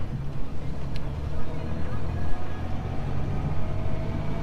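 Steady low drone of a moving vehicle's engine and road noise, with a faint whine that climbs slowly in pitch in the second half.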